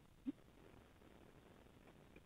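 Near silence: a pause in a phone call-in conversation, with one brief faint blip about a quarter second in.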